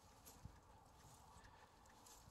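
Near silence: outdoor background with a couple of faint soft taps.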